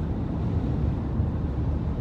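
Steady low rumble of a car's engine and tyres at highway speed, heard from inside the cabin.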